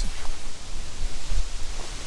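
Wind buffeting the microphone: a loud, steady hiss with a low, gusting rumble.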